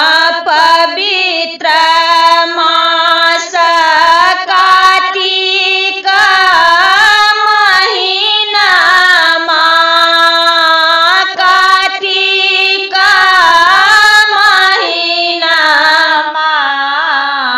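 A woman singing a Maithili samdaun, the mournful farewell song of the Sama-Chakeva festival, in a high voice. She holds long notes with sliding ornaments and takes short breaths between phrases.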